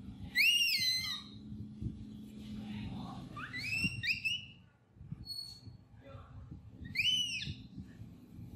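Baby macaque giving high-pitched cries: four thin, arched calls that rise and then fall, one near the start, two in quick succession midway, and one near the end.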